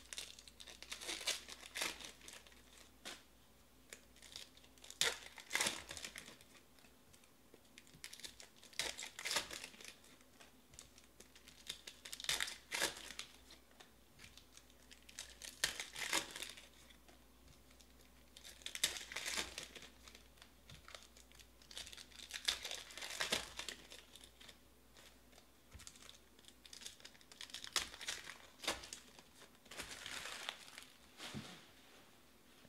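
Foil wrappers of 2020 Donruss Optic baseball card packs being torn open and crinkled by hand, in separate bursts of crackling every few seconds.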